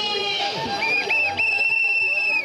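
A whistle blown in two short blasts and then one long, steady, shrill blast, over the murmur of a crowd.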